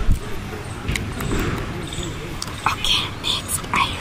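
Close-miked ASMR hand sounds: a few soft thuds, then from about halfway a run of crisp clicks and crackles as fingers work in a plastic bowl.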